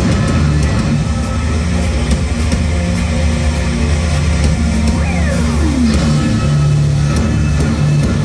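A heavy rock band playing loud and live: distorted guitars, bass and drums. About five seconds in, one sliding note falls steeply in pitch.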